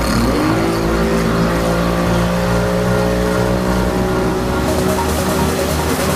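Motorboat engine revving up over the first half second, then running steadily at towing speed, with background music over it.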